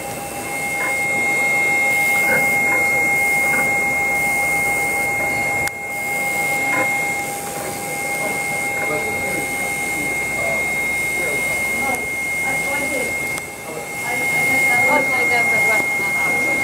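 Selective soldering machine running through its flux-spraying stage: a steady high-pitched whine over a lower steady tone and machine noise.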